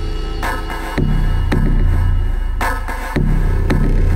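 Electronic music from a Propellerhead Reason synth combinator patch: sustained low bass notes with regular drum hits. Its audio is being switched in turn through four mixer channels on the beat by Matrix sequencers, with the channel effects still muted.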